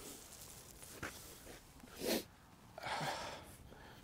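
A quiet stretch of open air with a sharp click at the start, then a short breathy burst of noise about two seconds in and a softer one around three seconds in, like a person's sharp exhale or sniff close to the microphone.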